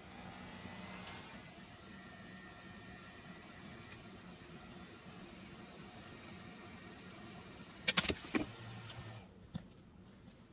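Handheld hot-air gun running with a steady blowing hum. A few sharp clicks and knocks come near the end, and the running stops soon after.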